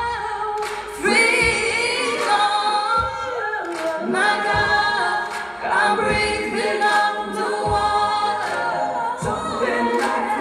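A woman singing a slow ballad live into a handheld microphone, with long held notes that bend in pitch. Low accompaniment notes sound beneath the voice every second or so.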